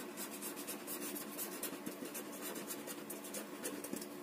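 Marker pen writing on paper: a quick run of short scratchy strokes as a word is written out.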